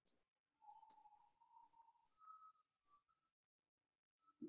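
Near silence on a video call, with one faint click less than a second in.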